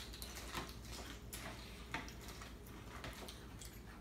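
Faint, scattered clicks of metal spoons tapping and scraping in plastic cereal bowls as three people eat cereal with milk.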